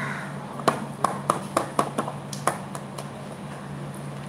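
About eight sharp taps in quick succession, roughly four a second, as a sheet of paper is tapped to knock the loose coloured sand off it, over a steady low hum.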